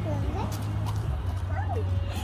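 A toddler's wordless vocal sounds, short gliding squeals and coos rising and falling in pitch, over a steady low hum.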